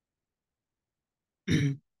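Silence, then a brief throat clearing near the end, just before the teacher starts speaking.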